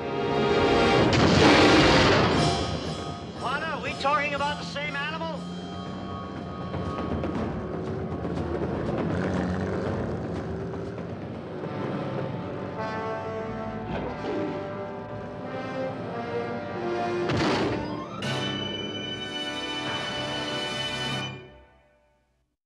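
Film trailer soundtrack: music with voices over it, a loud burst about a second in, and the sound cutting off just before the end.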